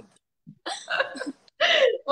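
Short, broken bursts of people's voices with a brief silence before them. These are quick vocal reactions rather than running speech.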